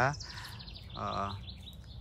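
A small songbird trilling: a quick run of high notes that falls a little in pitch, lasting about a second.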